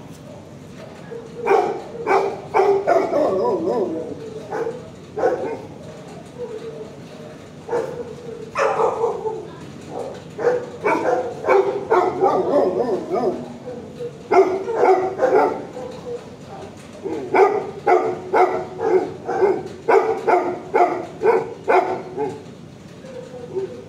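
Dogs in shelter kennels barking in repeated bouts, several barks a second, with short lulls between the bouts.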